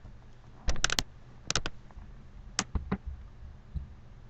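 Scattered sharp clicks from computer keys or buttons: a quick run of about four about a second in, a pair shortly after, then a few single taps.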